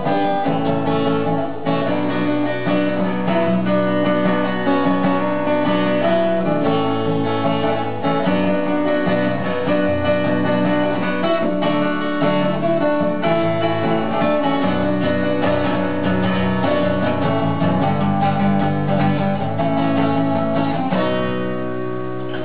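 Solo acoustic guitar playing an instrumental passage of chords with changing notes, at a steady level. It gets slightly quieter near the end.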